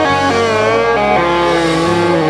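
Live band playing: drum kit, electric guitars and bass, with a held melody note that wavers in pitch.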